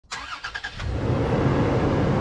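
Vehicle engine noise: a few short clicks, then a loud, steady low rumble that builds up about a second in.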